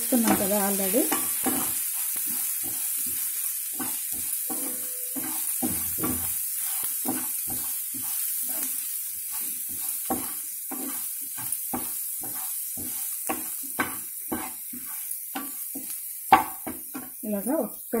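Diced potatoes, onion and spice powders frying in oil in a nonstick pan, sizzling steadily, while a spatula stirs and scrapes them with frequent light knocks against the pan.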